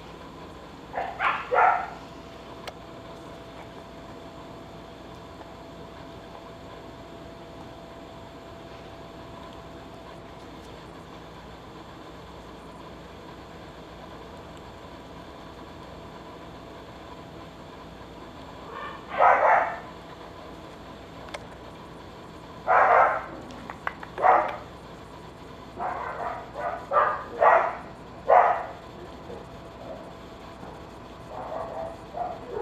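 Dog barking in short bursts: two quick barks just after the start, a long lull, then single barks and a rapid run of barks in the last few seconds.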